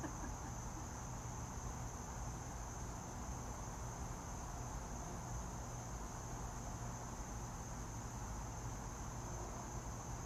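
Outdoor insect chorus, such as crickets, making a steady high-pitched drone that does not change, over a faint low background rumble.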